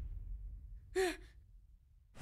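A boy's single short gasp about a second in, with a small rise and fall in pitch, over a low background rumble that fades away.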